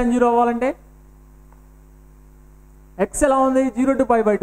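Steady low electrical mains hum, heard on its own for about two seconds between a man's speech at the start and near the end.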